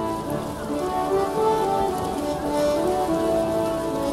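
Background music with held notes that step in pitch, over a steady rushing hiss.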